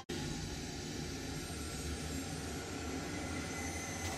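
Steady low rumbling drone with a hiss above it, electronically generated installation sound driven by streamed EEG brain-wave data, played through a loudspeaker.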